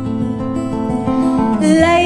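Acoustic guitar playing the opening chords of a song, the notes changing every fraction of a second.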